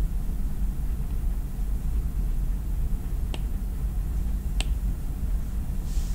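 Steady low background hum with two faint, sharp clicks a little over a second apart, past the middle.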